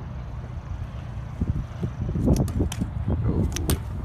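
BMX bike rolling on smooth concrete, with scattered sharp clicks and rattles from the bike in the second half, over a steady low rumble.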